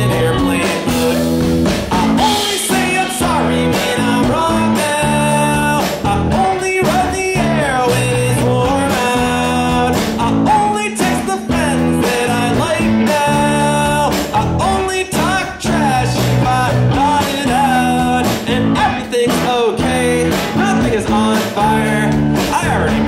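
Live indie rock band playing loudly: electric guitar over a drum kit, a full-band instrumental stretch of the song.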